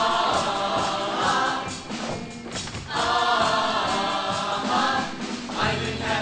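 Show choir singing in full chorus: two long held phrases, the second starting about three seconds in after a brief dip.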